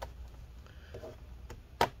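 Laptop bottom cover being pried off by hand: faint handling and scraping, then one sharp click near the end as a snap clip lets go.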